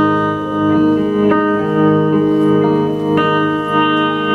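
Electric guitar playing ringing, sustained chords in a live country song, with a new chord struck about a second in and again about three seconds in.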